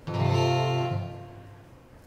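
An acoustic guitar chord is strummed right at the start and rings out, fading away over about a second and a half.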